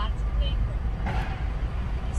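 Steady low rumble inside a Nissan Kicks cabin: engine and road noise in slow traffic, with a brief faint rush about a second in.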